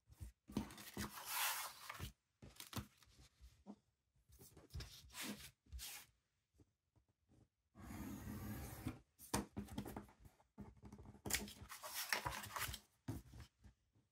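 Craft knife drawn along a ruler, slicing excess thin paper off a cover board in a series of scratchy strokes, each lasting up to about two seconds, with short quiet gaps between them.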